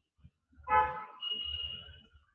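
A vehicle horn honking once, briefly, about half a second in, followed by a thin, steady high tone until near the end.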